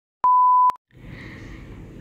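A bars-and-tone test beep: one steady, pure beep about half a second long that starts and stops abruptly, shortly after the start. It is followed by faint background hiss.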